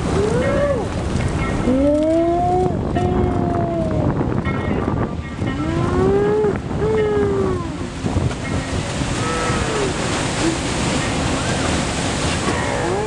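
Heavy ocean surf from a huge breaking wave, a loud steady rush of water, with people whooping and yelling long rising-and-falling cries several times over it.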